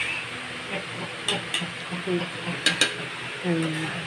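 Metal ladle stirring a pot of soup broth, knocking a few times against the side of the metal pot, over a steady hiss.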